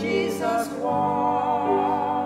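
A woman and a man singing with vibrato to grand piano accompaniment, holding long sung notes.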